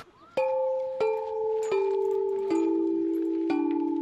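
Outdoor tubular chimes, tall metal tubes struck one after another with a mallet. There are five strikes about a second apart, each a lower note than the last, so the ringing tones overlap in a descending scale.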